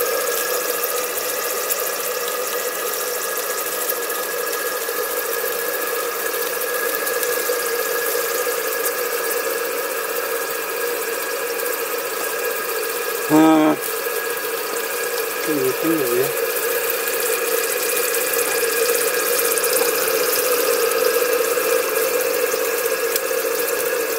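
Maxwell Hemmens Max 11 model steam engine and its boiler running steadily on low pressure, about 30 psi, with the boiler quite loud: a continuous sound with several held tones. A short voice exclamation cuts in a little past the middle.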